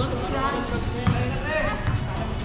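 A basketball bouncing a few times on a concrete court, with voices calling out over it.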